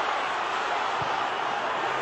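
Large football stadium crowd making a steady din, heard through a television broadcast.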